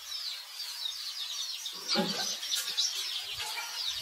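Many small birds chirping continuously in quick, high, rapid calls, with a brief lower-pitched call about two seconds in, the loudest sound here, and a couple of soft low thumps near the end.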